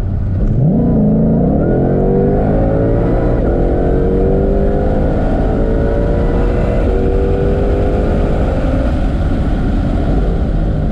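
2020 Shelby GT500's supercharged 5.2-litre V8 at wide-open throttle, heard from inside the cabin. Revs jump sharply about half a second in, then climb under boost, with two quick upshifts about a third and two thirds of the way through as the car accelerates past 100 mph.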